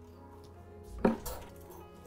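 A sharp plastic-and-metal click about a second in, followed by a couple of lighter clicks, as the domestic knitting machine's carriage is set by hand.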